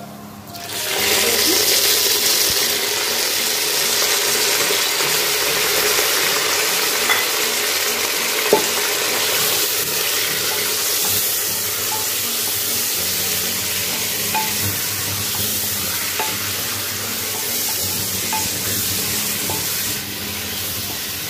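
Raw mutton frying in hot oil in a pot. The sizzling starts suddenly about a second in as the meat goes in, then runs on steadily, with a few light knocks of the spatula against the pot as it is stirred.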